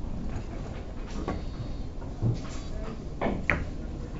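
A carom billiards shot: short sharp knocks and clicks as the balls are struck and hit one another and the cushions. There is a dull knock about two seconds in, then a quick cluster of clicks, the sharpest about three and a half seconds in.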